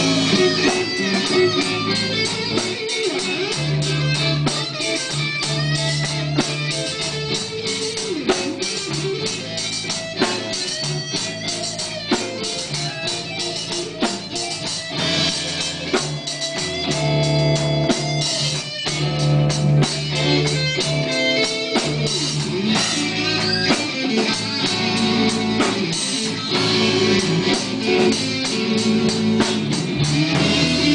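Live rock band playing: electric guitar with a drum kit, loud and continuous.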